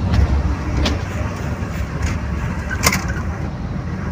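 Steady low rumble of a bus's engine and running gear heard from inside the passenger cabin. Two short sharp clicks cut through it, a faint one about a second in and a louder one near three seconds.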